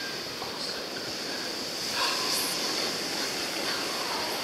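Steady wash of surf, an even hiss with no distinct wave breaks standing out.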